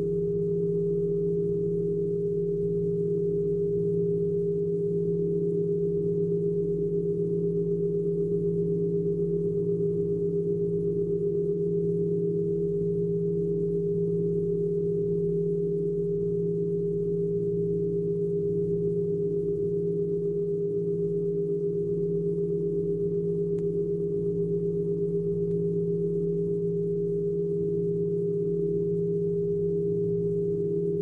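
Electronic drone music: a few steady held tones, a strong mid-pitched note over a lower one, unchanging in pitch and level, with a faint low rumble beneath.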